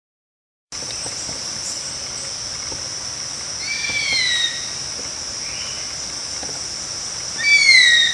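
Nature sound bed: a steady high insect drone, with a bird of prey screaming twice. Each scream is a falling cry under a second long, and the second is louder.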